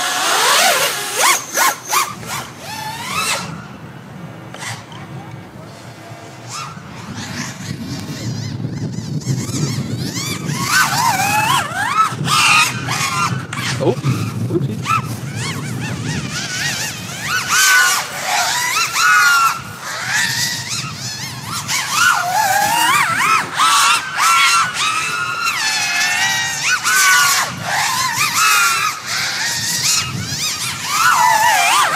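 A six-cell (6S) FPV racing quadcopter flying fast laps, its brushless motors whining in a pitch that swoops up and down sharply with the throttle. The sound is quieter between about three and eight seconds in, then louder.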